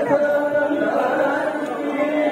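Voices chanting a Hindu aarti hymn, holding long steady notes.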